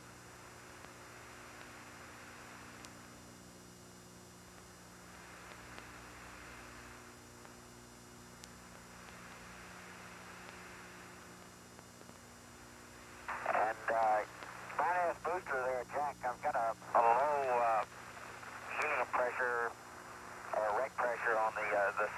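An open radio communications loop hissing steadily with a low electrical hum, cut off above the treble. About two-thirds of the way through, a man's voice comes in over the same radio link.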